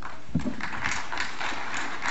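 Audience applauding: many hands clapping in a dense, steady patter.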